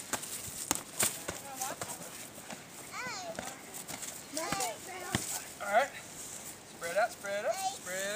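Children's high-pitched shouts and exclamations, with a few sharp knocks of padded boxing gloves landing, mostly in the first second or so and once more about five seconds in.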